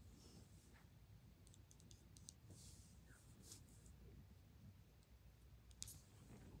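Near silence: room tone with a few faint, scattered clicks and soft rubbing.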